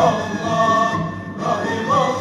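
Mevlevi sema music: a men's choir singing long held devotional phrases, with a short break in the sound a little over a second in.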